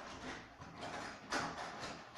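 Rustling and light knocks of things being handled and moved about, a few short scrapes, the loudest about two-thirds of the way through.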